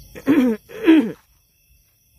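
A man's short laugh: two falling voiced syllables within the first second or so.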